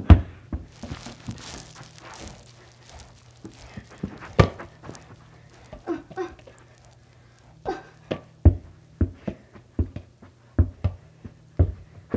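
Soccer ball thudding off feet and head and dropping onto the carpet: a loud kick at the start, a few scattered touches, then a quick run of touches, about two or three a second, near the end.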